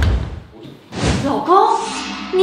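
A door pushed open with a low thud, then a person's voice from about a second in.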